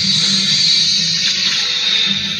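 Film soundtrack music with a steady rushing hiss laid over it.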